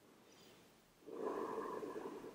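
A long audible exhale by a woman lying face down, starting about a second in and fading away.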